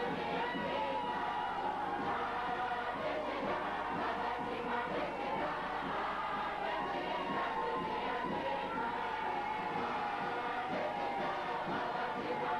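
A large crowd singing together in chorus, with general crowd noise underneath.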